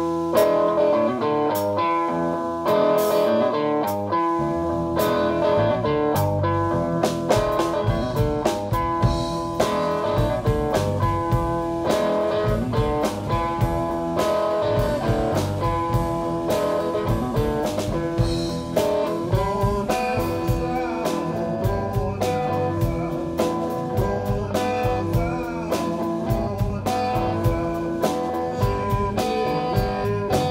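Live electric blues band playing without vocals: electric guitar over bass guitar and drum kit in a hill country blues groove, the low end filling out about four seconds in.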